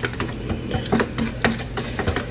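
A plastic tablespoon stirring yeast into warm water in a plastic measuring cup, the spoon ticking against the cup's sides in quick light clicks, about four or five a second.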